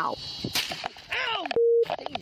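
A short, steady single-pitch censor bleep masking a word near the end, preceded by a raised male voice from body-camera audio.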